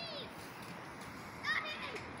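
Birds calling: short, high, arching calls at the start and again in a quick cluster about one and a half seconds in, over a steady hiss of river and wind.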